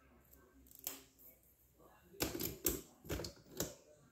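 Colouring pens being handled against each other and the table: one light click a little under a second in, then a quick run of about five sharp clacks in the second half.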